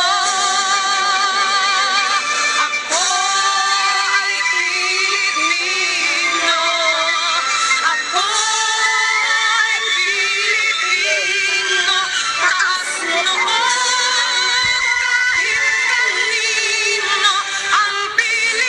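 A song: a solo singing voice over backing music, its held notes wavering with vibrato.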